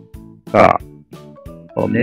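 A man's voice says a short Thai word, and a little more speech starts near the end, over soft background music with plucked guitar.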